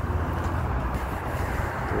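Road traffic: a steady low rumble of cars going by on the road.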